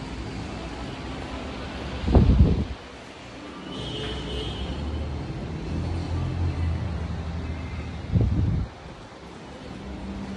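Steady low rumble of a moving vehicle heard from inside the cabin, with two short, loud deep rumbles, about two seconds in and again near the end.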